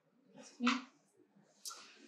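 A short vocal sound from the speaker about two-thirds of a second in, then a breath drawn in near the end.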